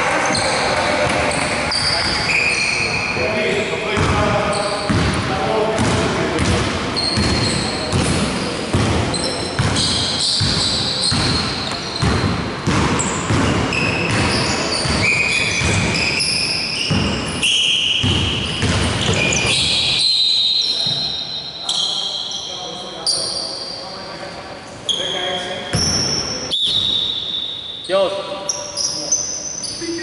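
A basketball bouncing on a hardwood gym floor, with sneakers squeaking in short high squeaks as players run. The sound echoes in a large hall. The dribbling thins out about two-thirds of the way in, leaving a few separate knocks.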